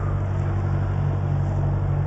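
Diesel lorry engine idling steadily nearby, a low even hum.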